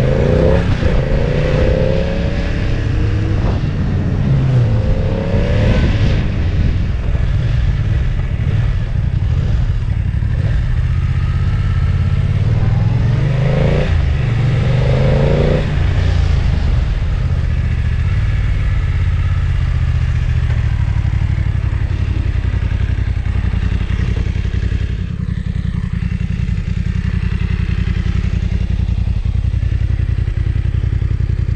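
Motorcycle engine under way, revving up through the gears: the pitch climbs and breaks off at each shift in several runs of acceleration, then runs more evenly.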